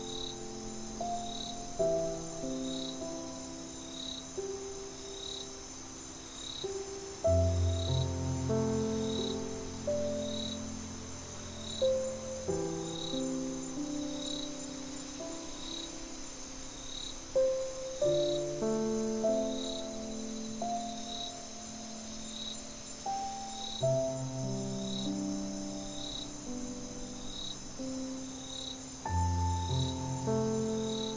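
Slow, soft solo piano music with crickets chirping behind it: a regular chirp about three times every two seconds over a steady high trill. Deep low piano notes come in about seven seconds in and again near the end.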